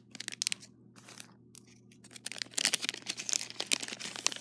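Lego Unikitty blind-bag packet crinkling and crackling as it is handled and torn open, quick crackles that grow busier in the second half.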